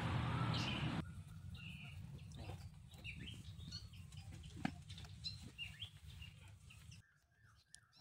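Small birds chirping now and then, with a few sharp clicks, after about a second of loud rushing noise; the sound drops almost to nothing near the end.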